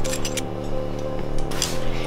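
Background music of sustained low tones, over which a few sharp metallic clicks of a semi-automatic pistol being handled sound, the loudest near the end.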